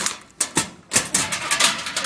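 Metal school locker being opened: the padlock rattling as it comes off and the sheet-metal door and latch clattering open, a quick run of sharp clicks and knocks, thickest in the second half.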